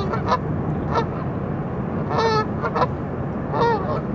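Canada geese honking: about six short honks, with one longer, drawn-out call a little past the middle, over a steady low rumble.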